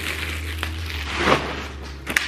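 Clear plastic garment bag crinkling and rustling as a dress is pulled out of it, loudest about a second in.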